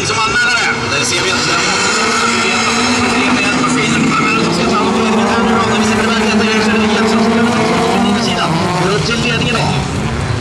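Several bilcross race cars' engines running hard in a pack on a dirt track, their pitch rising and falling as they rev and change gear.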